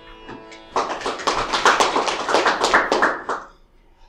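A small audience applauds for about two and a half seconds, starting a little under a second in. Before it, the last notes of music fade out.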